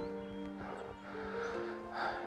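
Soft background score of sustained, held chords, moving to a new chord about halfway through.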